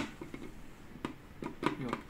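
Hard plastic parts of a hand blender's chopper bowl and lid knocking and clicking as they are handled and fitted together, with a few short sharp clicks in the second half.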